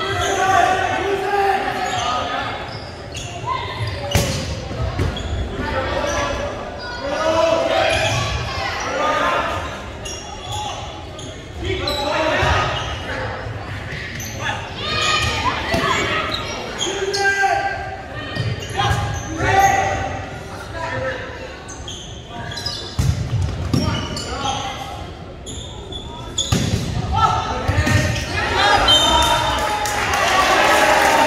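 A volleyball being hit and spiked during rallies, in sharp smacks every few seconds that echo around a large gymnasium, over continual shouting and chatter from players and spectators.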